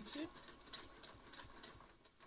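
Domestic sewing machine stitching slowly during free-motion ruler quilting, a light, uneven run of needle ticks that fades and stops near the end as the stitching line reaches the centre.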